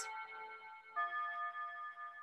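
Faint, sustained chime tones, a new set of bell-like notes sounding about a second in.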